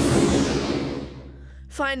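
Cartoon whoosh sound effect of the flying Numberjacks, a rushing noise that fades away over the first second or so. A voice starts speaking near the end.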